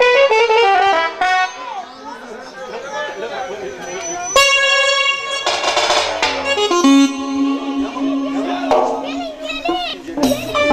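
Electronic keyboards played in loose, unstructured runs rather than a song: a quick burst of notes at the start, then loud held chords about halfway through and a low sustained note near the end, with voices and children talking underneath.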